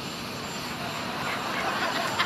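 Steady jet engine noise from a large airliner on the tarmac: an even hiss with a faint high whine, slowly getting louder.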